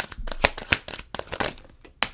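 Tarot cards being shuffled and handled, a quick irregular run of sharp card snaps and clicks that thins out near the end.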